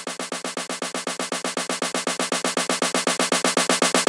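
Sampled snare drum in Ableton's Sampler playing a fast, even roll, about eight hits a second, growing louder as the note velocities ramp up. The velocity is tied to the filter, so the roll opens up as it gets louder: a snare riser.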